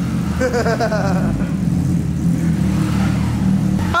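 Motorcycle engine idling steadily, with laughter over it about half a second in.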